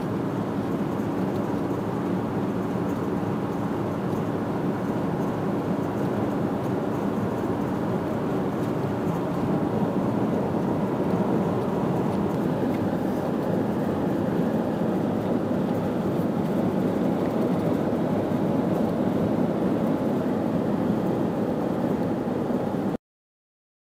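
Steady road and engine noise of a car driving at highway speed, heard from inside the cabin, getting slightly louder about halfway through.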